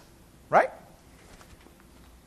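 A man's voice saying a single short word, "Right?", about half a second in, then quiet room tone.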